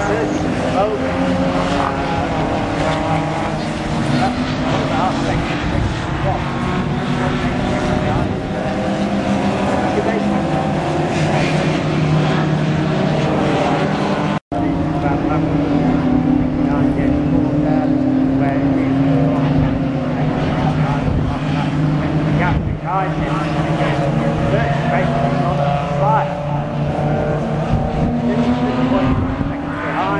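Engines of several BMW 3 Series (E36) race cars lapping a circuit, their pitch climbing and falling as they accelerate, shift gear and pass. The sound drops out for an instant about halfway through.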